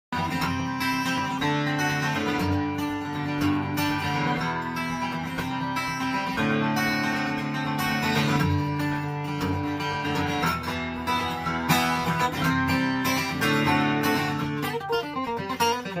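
Russell Crosby Jumbo acoustic guitar flatpicked in bluegrass style: a steady stream of quick picked single notes over ringing bass notes and chords.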